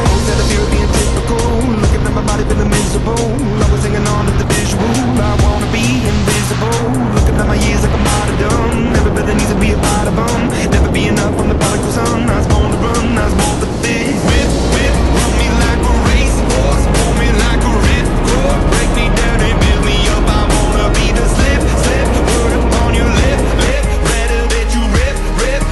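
Loud rushing wind and engine roar of a small propeller plane at the open door, buffeting the microphone, with background music laid over it.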